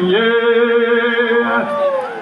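A man singing one long held note of a rhymed verse in the chanted style of a northeastern Brazilian vaqueiro's toada, the pitch held level and then falling away near the end.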